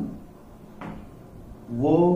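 A pause in a man's narration, with a short breath about a second in, then his voice resuming near the end.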